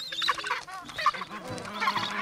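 Gentoo penguin chicks giving rapid, repeated high-pitched begging calls at a parent, several calls overlapping, with soft music underneath.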